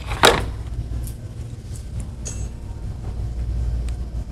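A plastic hexagonal game pixel is pressed onto the backdrop board, giving one sharp clack about a quarter second in, followed by a few faint clicks, over a steady low hum.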